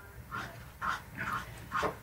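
A dog whimpering: about four short, high whines, the last one rising in pitch.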